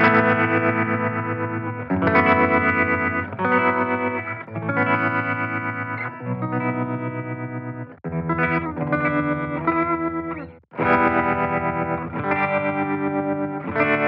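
Electric guitar chords through a Line 6 Catalyst 60 combo on its Boutique amp model with the tremolo effect on, the volume pulsing rapidly and evenly. Each chord rings for a second or two, with brief stops about eight and eleven seconds in.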